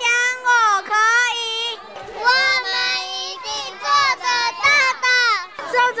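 Children's high-pitched voices in a run of short, loud phrases with swooping pitch.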